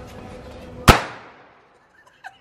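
A single firecracker going off with one sharp, loud bang about a second in, its echo dying away over about half a second.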